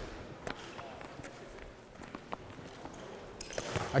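A handball bouncing and being caught, with players' footsteps on a sports-hall floor: scattered sharp knocks a few times over the seconds, with faint voices behind.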